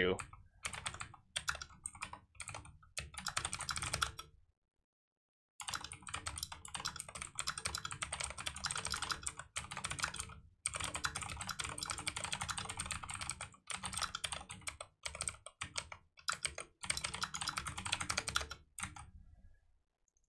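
Computer keyboard typing in quick runs of keystrokes, stopping for about a second around four seconds in and pausing briefly a few more times.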